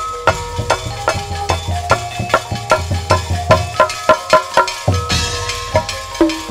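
Live traditional percussion ensemble playing a brisk, even beat: drum strokes mixed with struck metal instruments ringing short steady notes, about two to three strikes a second. A brighter metallic shimmer joins near the end.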